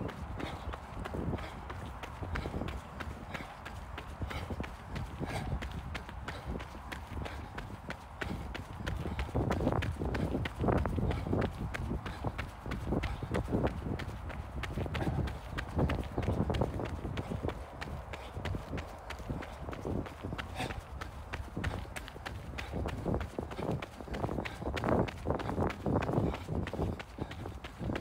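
Running footsteps crunching on a gravel path in a quick, even rhythm.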